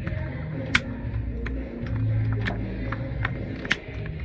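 Several sharp clicks of plastic gripper parts being slid back onto a Brunswick GSX pinsetter's pin holder and gear track, over a steady low hum.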